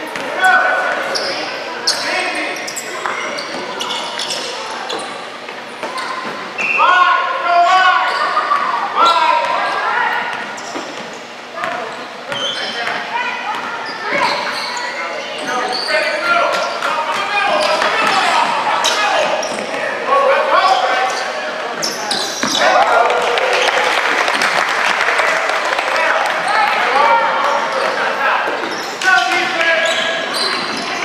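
Basketball being dribbled and bounced on a hardwood gym floor during a game, with players and spectators shouting. The shouting grows louder and busier for several seconds near the end.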